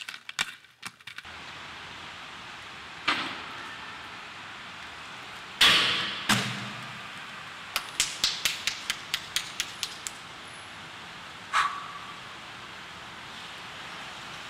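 Scattered knocks and a quick run of about ten clicks over two seconds, then one knock that rings briefly, over steady tape hiss: an aggressive inline skater's skates and hands knocking on a stair railing as he climbs up onto it.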